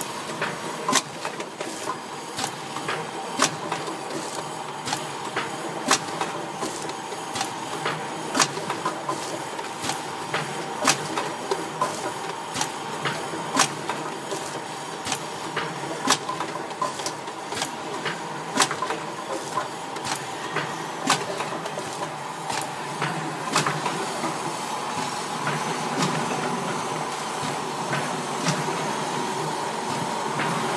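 Vertical sachet packing machine running: a steady mechanical hum with sharp clacks from its mechanism repeating in a regular cycle, a strong clack about every two and a half seconds with lighter clicks between.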